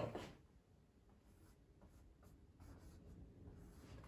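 Near silence, then from about halfway through faint strokes of a dry-erase marker writing a small "+1" on a whiteboard.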